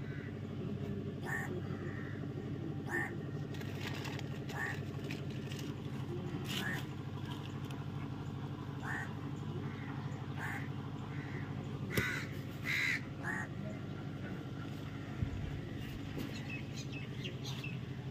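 Crows cawing, short separate calls every second or two, a few close together near the middle, over a steady low hum.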